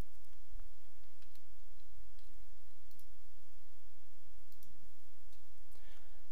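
A few faint, scattered computer mouse clicks over a steady low hum.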